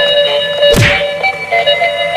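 A single thump about three-quarters of a second in, as a dancing duck astronaut robot toy topples over onto the ground, with music playing.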